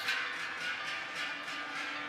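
Large cowbells clanging in an irregular run of metallic strikes as the cows walk.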